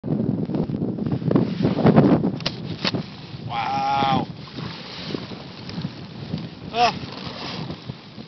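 Wind buffeting a phone's microphone, with a heavy rumble for the first three seconds and a few knocks near the end of that stretch. It then eases to a lower rush. About three and a half seconds in there is a single drawn-out pitched call lasting under a second.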